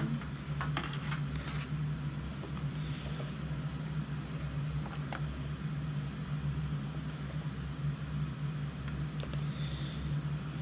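Steady low hum, with a few faint taps and crinkles as thick oobleck is poured from a plastic bowl into a foil pan and a hand reaches into it.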